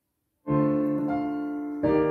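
Piano accompaniment entering after silence: a chord struck about half a second in and left to ring and fade, then a second chord just before the end.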